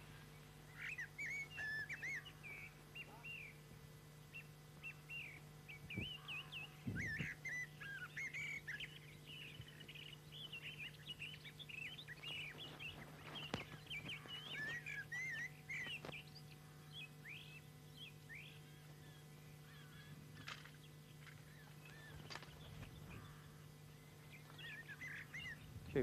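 Faint birds chirping: many short, quick chirps through most of the stretch, over a steady low hum, with a few soft clicks.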